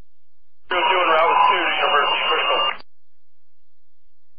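Police radio transmission: one short burst of a voice over the channel, thin and narrow-band, lasting about two seconds and starting and cutting off abruptly as the transmitter is keyed and released.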